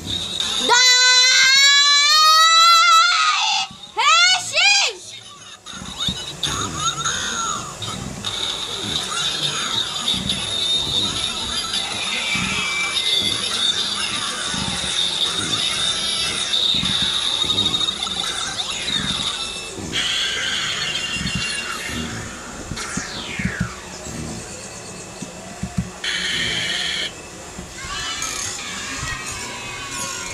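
A loud electronic tone rising in steps for about three seconds, then a dense mix of music, sound effects and voices from television footage.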